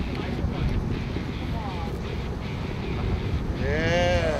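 Steady low rumble of wind buffeting the microphone and the boat's engine on an open fishing-boat deck, with a voice calling out loudly near the end.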